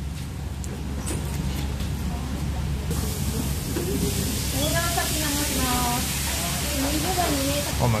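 Frying gyoza sizzling on a griddle: a steady hiss that starts suddenly about three seconds in and stops just before the end. Over its second half a voice hums, rising and falling in pitch.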